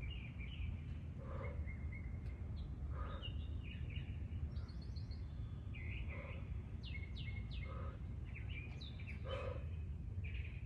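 Several birds chirping and calling over a steady low outdoor rumble, with short exhaled breaths about every one and a half seconds, one with each push-up.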